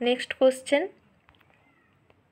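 Domestic cat meowing: three short meows in quick succession within the first second.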